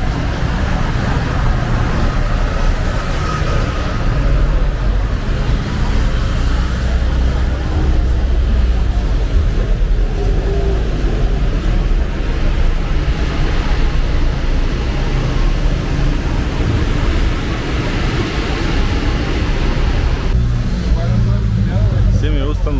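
Street traffic on a narrow town street: cars passing with a steady low rumble, under the chatter of passers-by.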